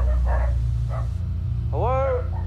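A dog barks once near the end, a short bark that rises and falls in pitch, over a steady low hum.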